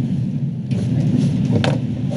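Steady low rumble of room noise, with a brief faint sound near the end.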